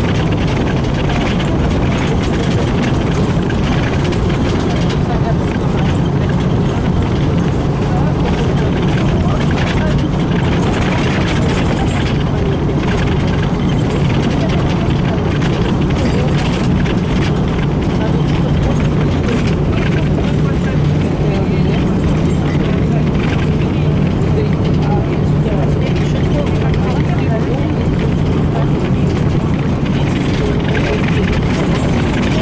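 Interior sound of a LAZ-695N bus under way: the engine running with a steady low drone, over constant road and body noise.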